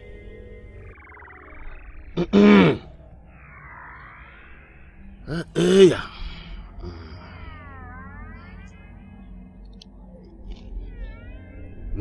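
Two short, loud wordless vocal cries from a man, each rising and then falling in pitch, about two and a half and six seconds in, over background music with swooping tones.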